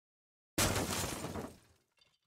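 A sudden, loud shattering crash sound effect, like breaking glass, starting about half a second in and fading away over about a second: the sting of an animated logo intro.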